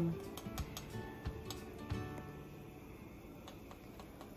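Faint, irregular clicks and scrapes of a small metal spoon inside a spice jar as paprika is dug out. Quiet music plays underneath.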